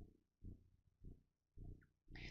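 Near silence, broken only by faint, short low thuds about twice a second.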